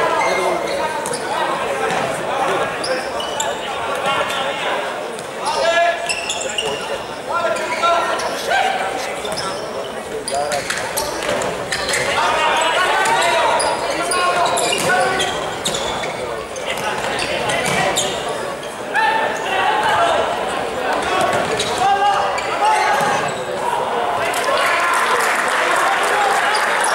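Futsal ball being kicked and bouncing on a wooden court, with short sharp knocks scattered through, under players' and coaches' shouts echoing in a large sports hall.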